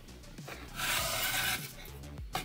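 A single scraping rub lasting under a second, as the 120 mm Noctua PC fan is handled and set in place.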